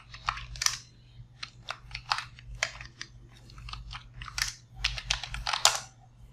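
Computer keyboard being typed on: a run of irregular, quick keystroke clicks as a command is entered, over a faint steady low hum.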